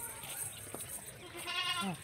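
A goat bleats once near the end, a wavering call that drops in pitch as it stops, over faint background noise from the pen.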